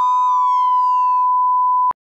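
Flatline sound effect: a single loud, steady, high electronic beep, with a falling electronic tone sliding down over it for about the first second. The beep cuts off suddenly just before the end.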